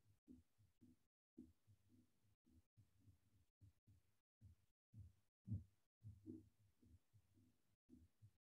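Near silence on a video-call line, with faint, irregular low thuds and brief dead-silent dropouts.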